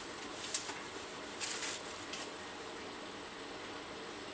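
Faint, short scrubbing and scuffing noises from hands cleaning a surface, a few in the first half, over a steady low hiss.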